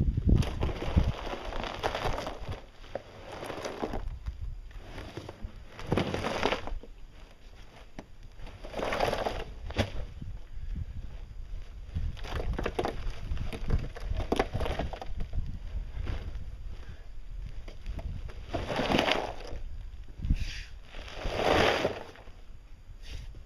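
Concrete mix churning and grinding inside a plastic drum as it is rolled and tipped over on the ground, coming in swells every few seconds as the drum turns.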